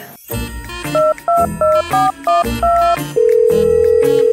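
Mobile phone keypad tones dialled in quick succession, each a short two-note beep. They are followed, about three seconds in, by a steady ringing tone on the line.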